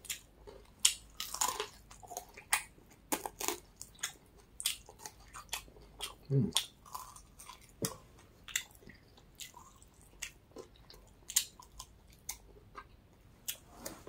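Chewing and biting close to the microphone while eating chicken wings off the bone: irregular short smacks and crunches.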